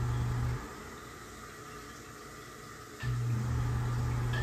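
Ceiling bathroom exhaust fan running with a steady low electric hum. It is switched off about half a second in, then switched back on with a click near the three-second mark and the hum returns at once.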